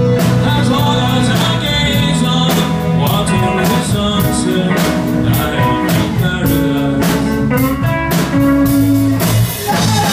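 Live band playing a 1960s pop song: a steady drum-kit beat with guitar and a singing voice.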